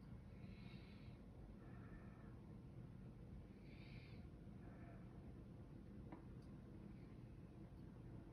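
Near silence: room tone with a low steady hum and a few faint soft puffs of breath-like noise.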